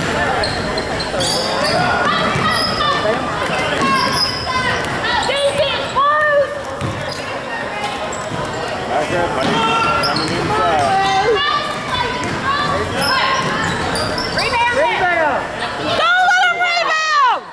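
A basketball being dribbled and players' sneakers squeaking on a hardwood gym floor during play, with scattered voices from players and spectators.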